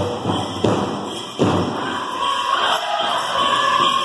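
Powwow drum being struck in a steady beat, ending with a hard final beat about a second and a half in. It is followed by a long high held call that bends and starts to drop near the end.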